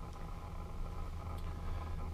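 Quiet room tone with a steady low hum and faint even tones, without any distinct event.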